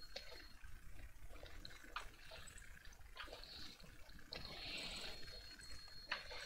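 Faint room noise with a few soft, separate clicks and a brief faint hiss a little after four seconds in.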